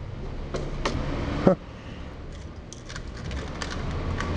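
Small clicks and rattles of a small object being handled, with one sharper click about one and a half seconds in and a quick run of faint ticks later, over a steady low hum.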